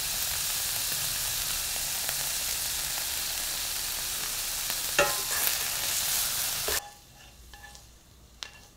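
Food sizzling in a hot frying pan while being stirred, with a sharp knock of the utensil against the pan about five seconds in. The sizzle stops abruptly near the end, leaving a few faint clinks.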